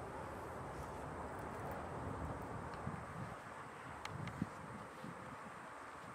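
Outdoor wind noise on the microphone with low rustling, and a couple of faint clicks about four seconds in.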